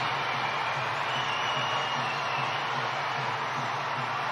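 Football stadium crowd cheering a goal, a steady wash of crowd noise with no break.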